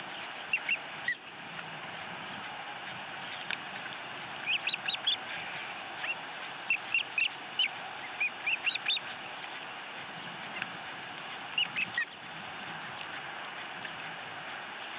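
Ospreys giving short, high chirping calls in small groups of a few at a time, over a steady background hiss.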